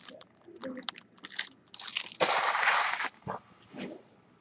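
A handful of empty foil trading-card pack wrappers being crumpled in a hand: short, irregular crackles, with a louder stretch of crinkling lasting about a second just past the middle.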